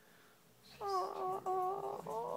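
Small chihuahua–miniature pinscher mix dog howling in long, high, held notes, starting about a second in and breaking briefly once, at the school bus passing outside.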